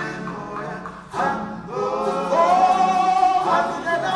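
Unaccompanied voices singing together, a cappella; the singing thins and dips about a second in, then comes back fuller with long held notes.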